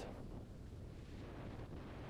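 Faint, steady background noise with a low hum and no distinct events: room tone in a pause between speech.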